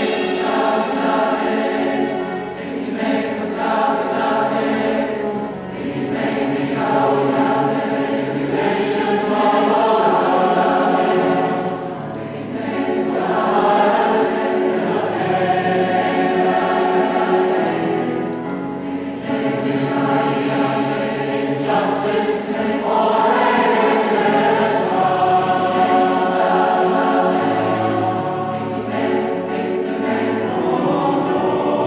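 Large mixed-voice choir singing a slow song in sustained phrases, accompanied by piano and cello.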